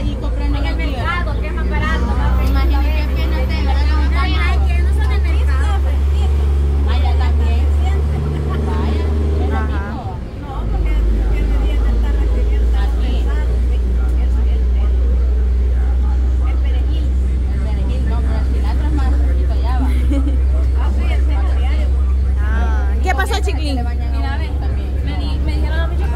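People talking over a loud, steady low rumble from a vehicle engine running nearby; the rumble drops out briefly about ten seconds in.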